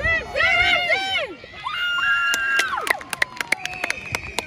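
Spectators at a rugby league match shouting and yelling encouragement in high, excited voices, with long drawn-out yells in the middle. A quick run of sharp hand claps comes in the last second.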